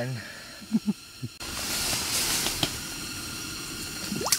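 A few brief voice sounds, then about a second and a half in a steady hiss cuts in suddenly and carries on, briefly louder just after halfway.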